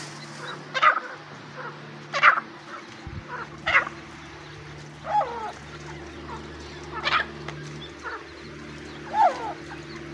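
Irani teetar francolins (hen and chicks) calling: about six short calls spaced a second and a half to two seconds apart, some with a quick rise and fall in pitch. A steady low hum runs underneath.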